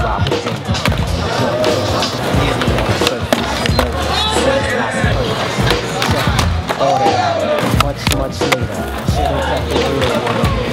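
Skateboards rolling on concrete and popping, grinding and sliding on a box ledge, with several sharp board clacks, under a song with singing.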